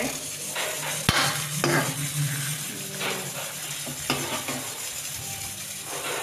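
Chopped onions sizzling in oil in a steel kadai, with a spoon scraping and knocking against the pan every second or so as they are stirred; the sharpest knock comes about a second in.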